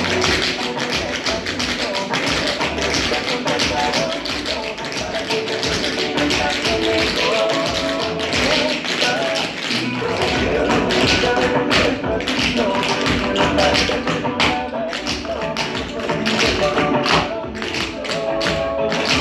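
A group of tap dancers' tap shoes striking a wooden floor in quick, rhythmic clusters of taps, over recorded music playing.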